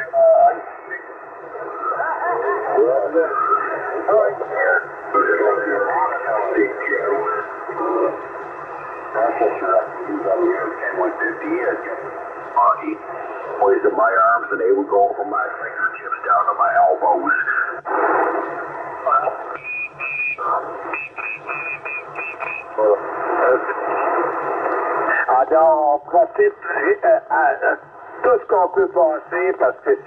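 Voices of distant CB stations coming from a Yaesu FT-450 transceiver's speaker as it is tuned across 27 MHz channels: thin, narrow-band radio speech with noise, none of it clearly intelligible. A few short high beeps come about two-thirds of the way through.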